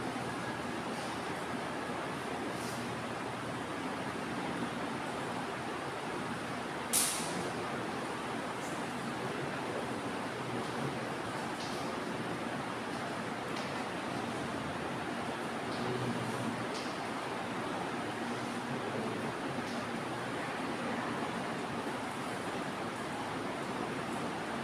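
Steady hiss of classroom room noise, with faint scattered taps of chalk on a blackboard as a diagram is drawn, and one sharper tap about seven seconds in.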